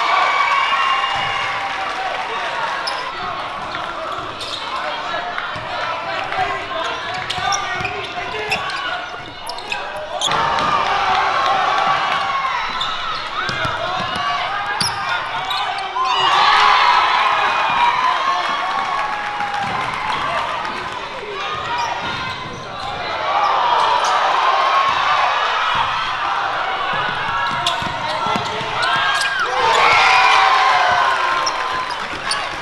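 Live sound of a basketball game in a gym: many voices of players and spectators calling out, with a basketball bouncing on the hardwood court. The voices swell louder at several points.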